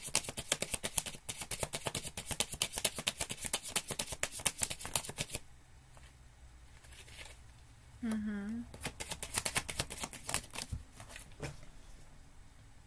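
A deck of tarot cards being shuffled by hand: a quick run of card flicks for about five seconds, then a pause, and a few more scattered flicks near the end.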